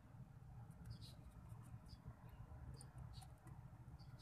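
Faint, irregular little clicks and smacks of a rabbit licking and drinking water from a plastic dropper.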